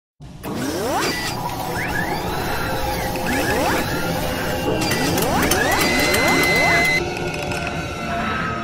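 Mechanical sound effects of an animated intro: machinery whirring and clattering, with ratcheting clicks and several rising servo whines. A steady high tone is held for about a second near the end, and the sound thins out shortly before it ends.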